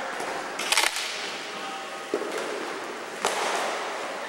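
Sharp cracks of ball-hockey sticks and a plastic ball in a gymnasium: a quick cluster of clacks a little under a second in, the loudest, then single cracks at about two seconds and about three and a quarter seconds.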